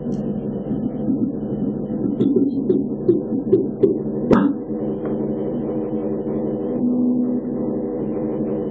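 Live experimental drone music: a steady low hum with several overtones runs throughout. Light taps come between about two and four seconds in, and one sharp struck hit a little past four seconds rings briefly.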